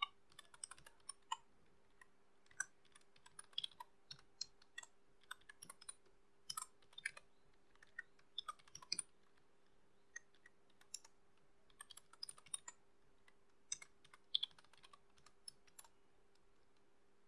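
Computer keyboard being typed on, faint keystrokes coming in irregular short runs with pauses between.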